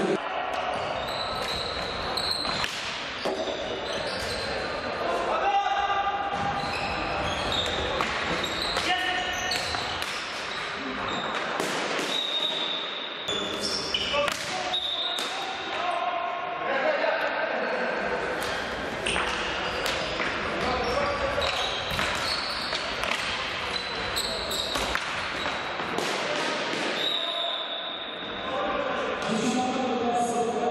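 Indoor hockey play in a sports hall: sharp knocks of sticks and ball on the wooden floor, many of them scattered through, with short high squeaks, amid players' shouts and spectators' voices, all echoing in the hall.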